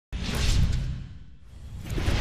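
Whoosh sound effects for an animated logo intro graphic: a loud whoosh with a deep low rumble swells right away and fades over the first second and a half, then a second whoosh builds toward the end.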